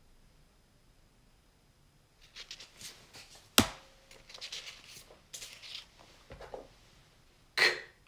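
Paper word cards and a small prop being handled and swapped, starting about two seconds in: light rustling and scattered small clicks, with one sharp knock about three and a half seconds in as the loudest sound.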